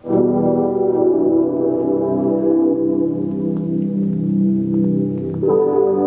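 A melodic music sample in E minor at 80 BPM, played back from production software: sustained chords that change to a new chord about five and a half seconds in.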